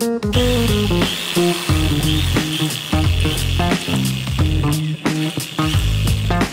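Electric drill spinning a stainless steel manual grinder through its crank shaft: a steady whirring, grinding run that starts a moment in. Background music with guitar plays over it.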